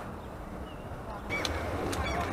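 Quiet outdoor background: a low steady rumble, with a faint short high whistle about a third of the way in and a few faint sharp sounds in the second half.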